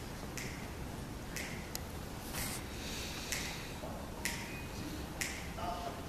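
Finger snaps setting the tempo before a jazz band starts to play: six crisp, evenly spaced snaps, about one a second.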